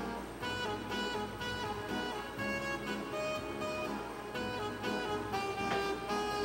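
Recorded instrumental backing music playing at a modest level: a song introduction of pitched notes that change about every half second, with no saxophone yet.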